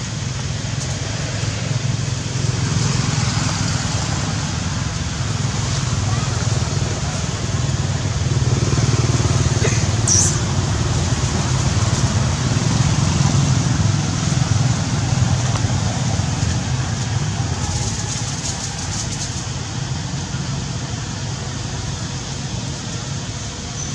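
Steady low rumble with a hiss underneath, a little louder in the middle, and one brief high-pitched squeak about ten seconds in.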